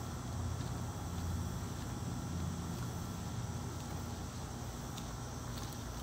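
Steady outdoor background noise: an even low rumble with a faint high hiss and no distinct event.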